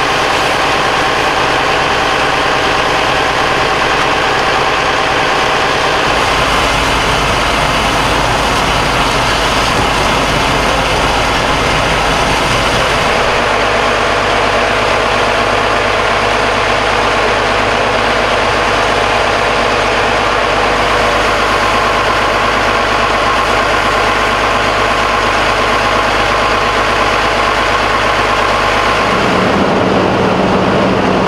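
Heavy diesel engine of a fire engine idling steadily, a loud rumble with a hiss over it. It shifts abruptly in tone a few times, about 6 and 13 seconds in and again just before the end.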